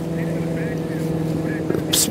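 A motor vehicle's engine running nearby with a steady low hum that holds one pitch.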